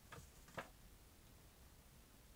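Dizzy Dunker spinning bucket-lid mousetrap turning and tipping a mouse into the bucket: two short clicks about half a second apart, the second louder.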